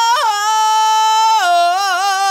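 A man singing unaccompanied, holding one long high note that steps down to a lower held note about a second and a half in, recorded through a Lauten Audio LS-208 microphone into the Antelope Discrete 8 Pro preamp and its AFX plugin chain.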